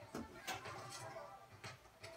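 Film soundtrack from a television playing quietly: low music from an animated film's end credits, broken by a few sharp taps.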